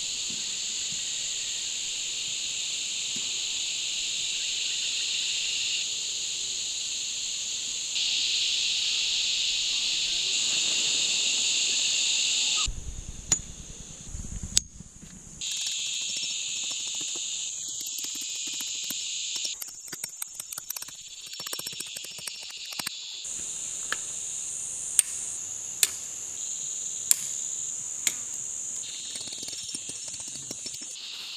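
A steady, high-pitched chorus of insects from the surrounding bush, jumping in level at edits, with a few sharp clicks and knocks in the second half.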